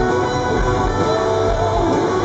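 Live band music led by electric guitar, playing steadily.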